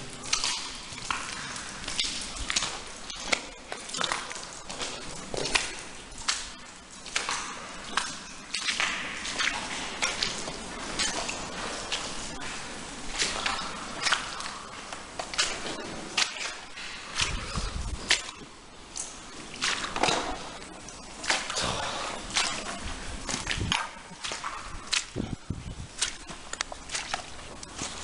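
Boots squelching and sloshing through deep mud and standing water in an irregular run of wet footsteps, the mud sucking the boots in at each step.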